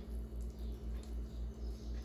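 Faint soft scraping of a silicone spatula spreading thick, still-hot banana and cocoa paste in a plastic dish, in short repeated strokes. A low steady hum runs underneath.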